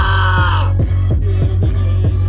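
A drawn-out shout of 'ah!' that cuts off about two-thirds of a second in. Under it runs a drill beat with a heavy bass that slides down in pitch again and again at a steady rhythm.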